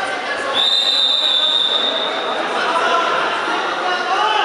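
A wrestling referee's whistle blown in one long, steady, high-pitched blast that starts sharply about half a second in and lasts under two seconds, over the voices of a crowd in a gym hall.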